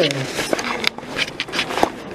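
Indistinct voices in the background, with scattered clicks and rustling from the handheld camera being carried.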